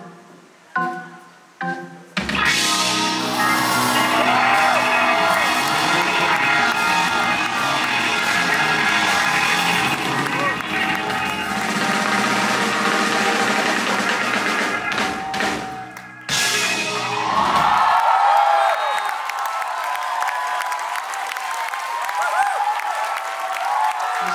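Live rock band: a few short separate band hits, then the full band with drums and bass comes in loud about two seconds in. About eighteen seconds in the bass and drums cut out, and wavering mid-range sound follows that fits an audience cheering at the song's end.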